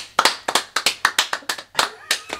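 Two people clapping their hands in a quick, uneven run of claps, about five or six a second.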